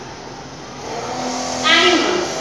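A road vehicle passing outside the room, growing louder from about a second in, with a short, loud pitched sound near the end.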